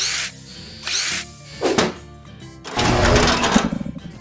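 Logo-intro sound design: music with mechanical whirring and sweeping effects, a burst about once a second, building to the loudest, densest stretch near the end before dropping away.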